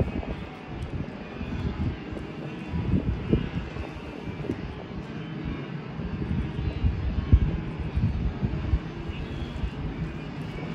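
Wind buffeting the microphone outdoors: irregular low rumbling gusts over a steady background hiss.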